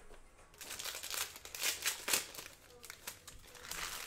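Foil wrappers of 2020 Panini Prizm WNBA trading-card packs crinkling as packs are handled and opened: a series of short crinkles, then a longer rustle near the end.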